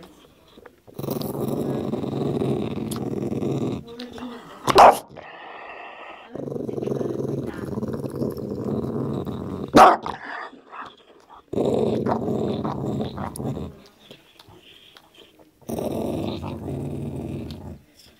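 Cavalier King Charles Spaniel growling over his bone in four long, rumbling growls, the low grumbling of a dog guarding a chew from whoever comes near. There are two short, sharp, louder sounds between the growls.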